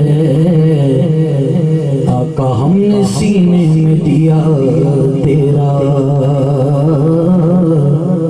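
A naat, an Urdu devotional song in praise of the Prophet, sung in long drawn-out notes that bend and ornament the melody, over a steady low hum. The singing breaks off briefly a little over two seconds in.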